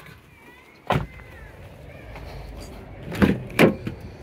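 A car door shuts with a single thud about a second in. Two clunks near the end, as the 2009 Nissan Cube's rear door latch is released and the door is swung open.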